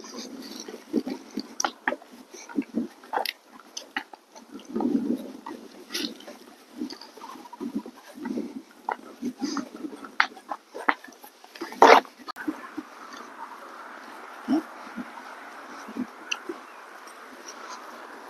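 A draft horse walking under a rider on a dirt trail: scattered, irregular footfall and tack sounds with a few short noises from the horse, the loudest a sharp click about twelve seconds in. A faint steady hiss comes in after that.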